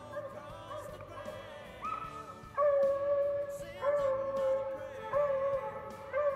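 Hunting hounds baying in a swamp: long drawn-out bawls that begin about two seconds in and come roughly once a second, with more than one voice overlapping.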